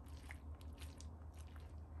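A metal spoon stirring cooked black beans and spinach in a stainless steel pot: faint wet squishing with a few soft clicks, over a steady low hum.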